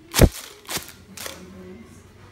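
Paper party blowout blown hard three times, each a short sharp burst about half a second apart, the first the loudest.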